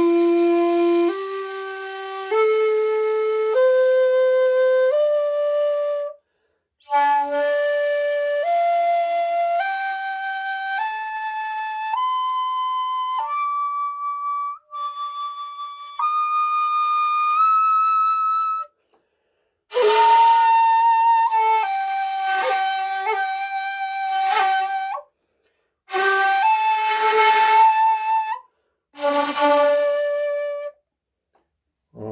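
Bamboo shakuhachi 1.8 playing held notes one after another, about one a second, climbing step by step through about two octaves. Later come two stretches of louder, breathier held notes with plenty of breath noise, and near the end a low note followed by the same note an octave higher.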